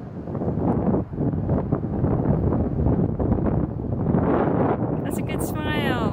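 Wind buffeting the microphone in gusts, with indistinct voices under it. Near the end there is a short call that slides down in pitch.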